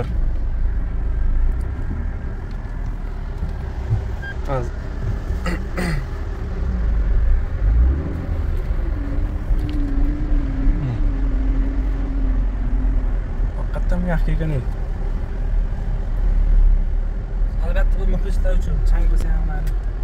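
Low, steady rumble inside the cabin of a JAC M4 minivan driving slowly over a rough dirt road, from the engine and the tyres on the uneven ground. A wavering drone rises over it for a few seconds in the middle.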